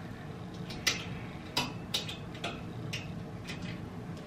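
Clothes hangers clicking against a wire closet rod as they are pushed along it one after another: about six sharp, irregular clicks.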